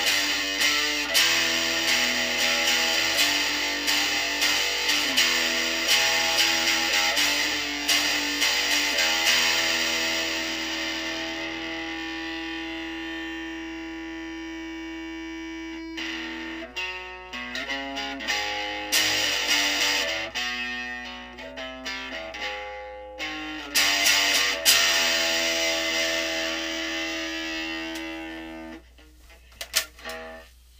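Guitar playing without vocals: strummed chords, then a chord left to ring out and die away, then single picked notes and a few more strummed chords that fade out near the end.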